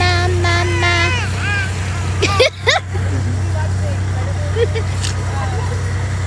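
Steady low hum of the tractor engine pulling the hayride wagon. In the first second a few held pitched notes sound over it, and about two seconds in come brief sweeping voice sounds.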